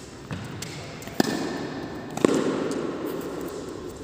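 Tennis ball struck by a racket at the net on an indoor hard court: a faint pop early on, then two sharp pops about a second apart, each with a short echo in the hall.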